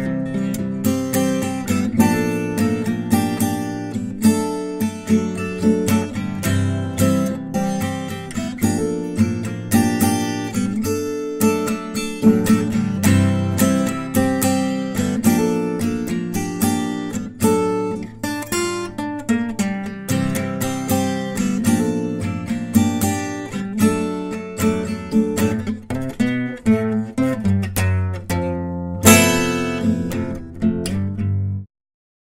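Background music of acoustic guitar, plucked in a steady flow of notes with strums, and a louder strummed chord near the end.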